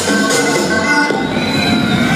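Loud dance music playing over a hall's sound system.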